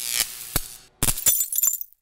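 Glass-cracking sound effect: sharp cracks with a ringing tail, then a second, brighter burst of shattering clinks about a second in that dies away just before the end.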